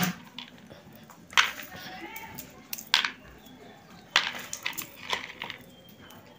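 Roasted peanuts rattling and rustling in a plastic bowl as hands rub off their skins and pick them out, with several short, sharp clatters.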